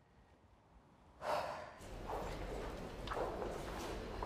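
A woman's heavy sigh, a single breathy exhale about a second in. Then a low steady room hum with a couple of footsteps.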